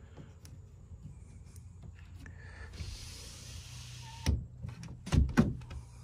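A van's sliding side window pane being slid along its track, a short smooth scrape about halfway through, then three knocks as the pane and frame are bumped, the last two close together. A low steady hum runs beneath.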